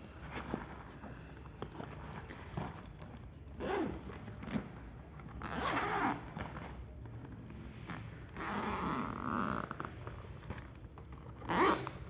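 Backpack zipper being drawn open in several short runs, with the bag's nylon fabric rustling as it is handled, the longest run about two-thirds of the way through.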